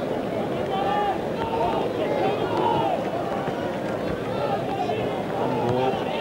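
Stadium crowd at a soccer match: a steady din of spectators, with individual voices calling and shouting through it.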